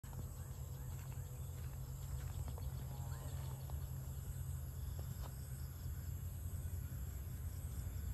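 Steady high-pitched insect chorus over a low, fluctuating rumble, with a few faint short chirps about three seconds in.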